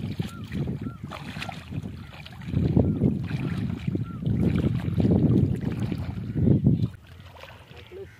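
Feet and legs wading through shallow lake water, sloshing and swishing, with gusts of wind rumbling on the microphone, loudest from about two and a half to seven seconds in.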